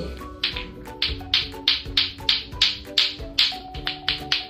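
Lato-lato clackers, two hard plastic balls on a string, knocking together in a steady rhythm of about four clacks a second, over background music.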